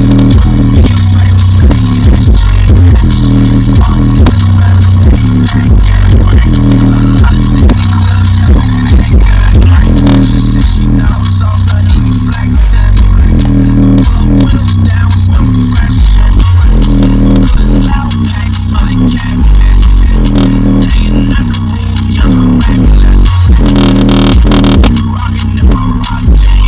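JBL Charge 4 portable Bluetooth speaker playing bass-heavy music loudly, recorded up close: a deep bass line stepping between notes in a repeating pattern.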